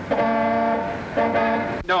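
A horn sounding twice at one steady pitch: a long honk of nearly a second, then a shorter one of about half a second.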